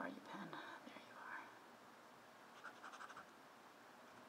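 A brief faint voice at the start, then a short run of quick scratchy writing strokes about three seconds in, as a page number is corrected on the slide; otherwise near silence.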